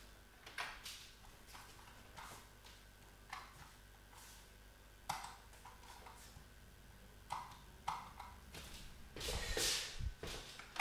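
Faint, irregular clicking of an Atari ST computer mouse's buttons, about a dozen clicks spread unevenly. Near the end there is a brief, louder rustle.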